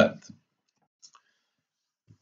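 Two faint, quick clicks about a second in, a computer mouse click advancing a presentation slide, in an otherwise near-silent pause.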